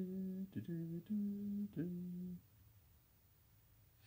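A man humming a few short held notes that step up and down in pitch, stopping a little past halfway.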